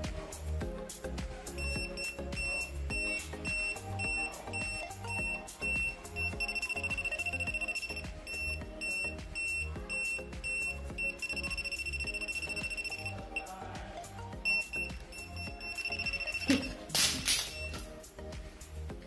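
Pen-type voltage tester beeping at a high pitch, spaced beeps running into rapid strings of beeps as it senses live voltage on the wiring, over background music. Near the end there is a brief, loud burst of noise, where the tester is captioned as giving an electric shock.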